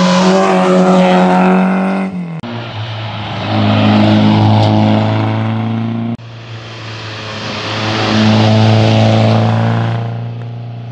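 Historic rally car engines running hard at high revs as cars pass on a tarmac stage, in three edited clips. The first cuts off about two and a half seconds in. Each of the next two swells as a car comes close and then fades as it goes by.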